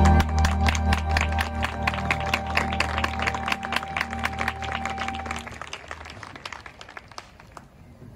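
A marching band holding a sustained chord that stops about five and a half seconds in, while the audience in the stands applauds. The clapping thins out and dies away near the end.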